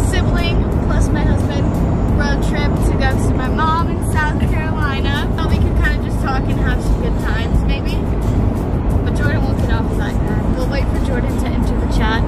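Steady low road and engine rumble inside a moving car's cabin, with music and snatches of voices over it.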